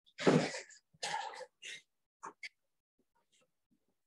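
Handheld eraser wiping a whiteboard in about five quick rubbing strokes over the first two and a half seconds, the first the loudest, then it goes faint.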